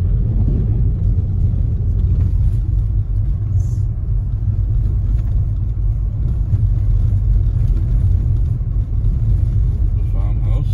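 Steady low rumble of a car's engine and tyres on a snow-covered road, heard from inside the moving car.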